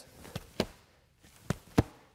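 Four light knocks and taps from a bo staff being swung through an upstrike and handled in the grip, the two sharpest close together near the end.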